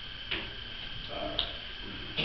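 Quiet room tone in a large room with a steady faint high hum, broken by two sharp clicks, one about a third of a second in and one just past the middle.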